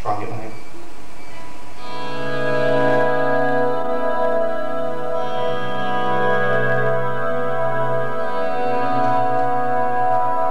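Electric guitar played clean through an amplifier, its middle pickup position wired with the outer coils split and out of phase for a noiseless clean tone: a few light picked notes, then from about two seconds in sustained, ringing chords that change around five and eight seconds in, a keyboard-like pad sound.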